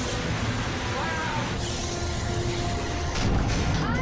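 Action film soundtrack: music over a heavy low rumble and a dense wash of noisy sound effects, with a few short gliding cries.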